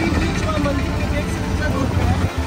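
Auto-rickshaw engine running steadily during a ride, heard from the passenger seat, with a voice over it.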